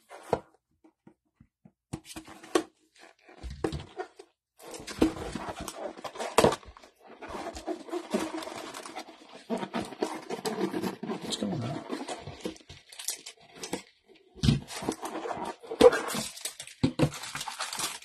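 Plastic shrink wrap crinkling and tearing as it is stripped off a cardboard trading-card box, then the box being handled and opened and the foil card packs shuffled out. The first few seconds hold only a few small clicks before the crinkling starts.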